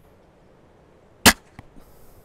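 A heavy steel-bowed windlass crossbow, rated at 850 lb, is loosed once with a single sharp crack about a second and a quarter in, shooting a 93 gram short bodkin bolt.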